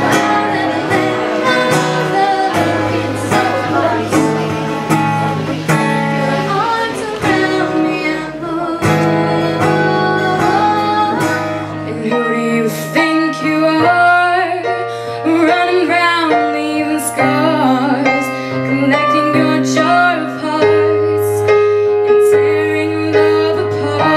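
A girl singing live to her own strummed acoustic-electric guitar. About halfway through it changes to another girl singing over a Yamaha digital piano.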